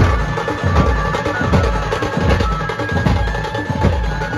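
A dhumal band playing: many large drums beaten in a fast, dense rhythm, with a held melody line over them.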